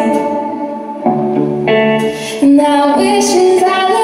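Live band music: a woman singing held notes over guitar and band accompaniment.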